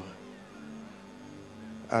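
Soft background music from a keyboard, holding a steady low note.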